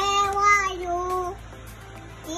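A toddler singing a drawn-out phrase, the pitch held almost level and dipping slightly before it stops a little over halfway through.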